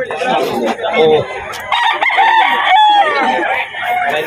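A rooster crowing once, a drawn-out call about two seconds in, with men talking around it.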